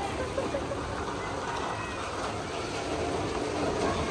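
Rain falling steadily onto standing flood water, a constant even hiss.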